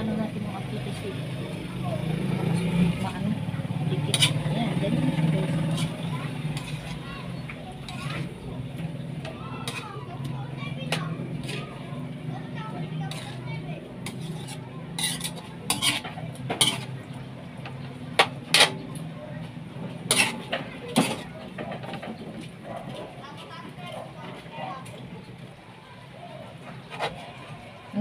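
A metal spoon stirring thick sauce-coated chicken wings in an aluminium wok. It scrapes and knocks against the pan, with a run of sharp clinks in the middle.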